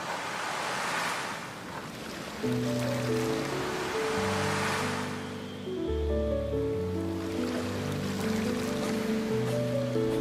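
Small waves washing onto a sandy shore, two slow swells of surf rising and falling. Soft background music of slow held notes comes in about two and a half seconds in.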